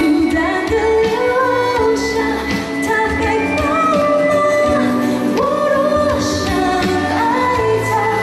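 A woman singing a Mandarin pop song live over instrumental accompaniment, her voice sliding between held notes.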